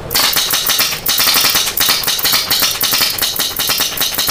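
HPA airsoft rifle with a Nexxus fully mechanical engine firing a fast string of shots, a rapid clatter of clicks with a short break about a second in.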